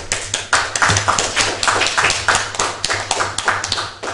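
A small group of people applauding, the claps thinning out near the end.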